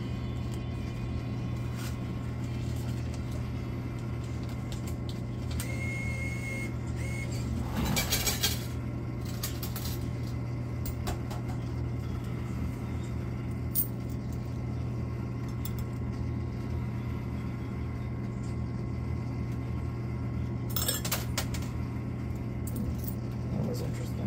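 Quarters clinking in a coin pusher arcade machine, in two short clusters of metallic clicks about eight seconds in and again near the end, over a steady low hum.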